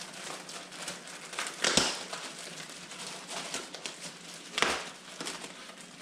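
Clear plastic packaging bag crinkling and rustling as it is handled and opened, with two louder crackles, about two seconds in and again about three seconds later.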